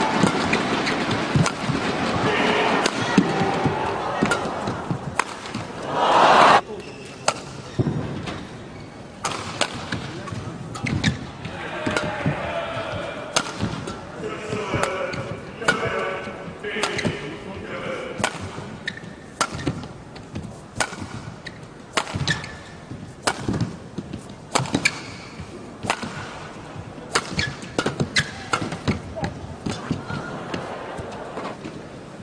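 Badminton rally: sharp cracks of rackets striking the shuttlecock, exchanged irregularly back and forth, over crowd noise in the arena. Dense crowd noise over the first few seconds swells into a short loud burst about six seconds in.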